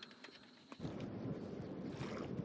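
Quiet for just under a second with a few faint clicks, then steady wind noise rumbling on the microphone aboard a sailboat under way on open water.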